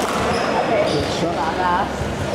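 Basketball game in a gym: spectators and players talking over one another, with a basketball bouncing on the hardwood court.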